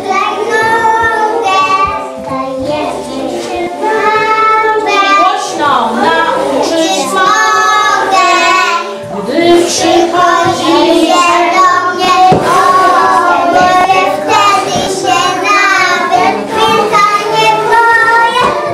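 A group of preschool children singing a song together.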